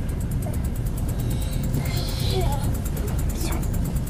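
Passenger train running, heard from inside a sleeping compartment: the wheels on the rails make a steady low rumble, with one sharper knock near the end.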